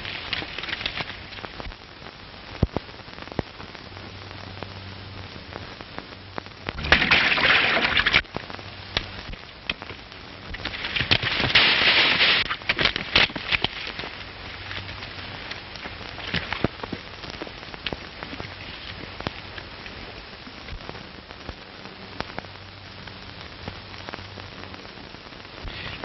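Steady hiss and crackle of an old optical film soundtrack, with scattered clicks and two louder bursts of rushing noise about seven and eleven seconds in.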